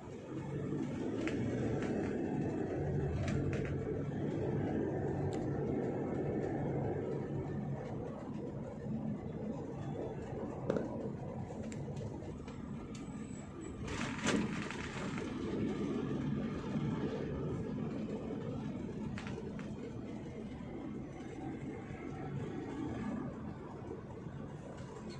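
Car engine and tyre noise heard from inside the cabin while driving, a steady low rumble that swells just after the start. A brief knock comes about fourteen seconds in.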